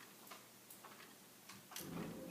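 Quiet room tone with a few faint, irregular small clicks.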